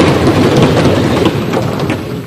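Applause from the members of a parliament chamber, a dense crackling clatter that begins to die away near the end.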